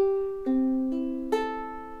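Ukulele fingerpicked as a slow arpeggio: four strings plucked one at a time about half a second apart, rising from the fourth (high G) string to the first (A), with each note left ringing so they pile up into a chord.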